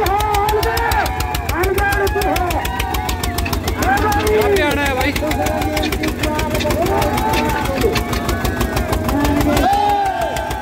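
Eicher 241 tractor's single-cylinder diesel engine running with a steady, even firing beat. Many voices of a crowd talk over it.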